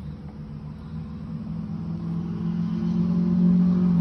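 Honda Recon 250 ATV's single-cylinder four-stroke engine idling steadily, a low even hum that grows louder over the few seconds.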